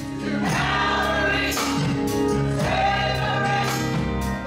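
Church choir singing a gospel song with organ accompaniment.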